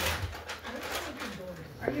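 Close-up chewing of crunchy jalapeño-seasoned pretzels, with a low, wavering hum through a full mouth in the first second. Speech begins near the end.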